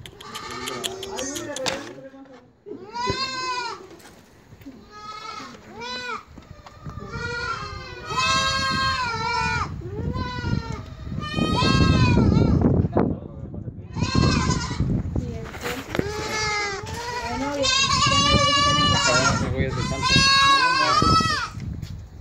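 A pen of young goat kids bleating, many calls overlapping, each a wavering cry. The calls come singly at first and run almost without a break through the second half.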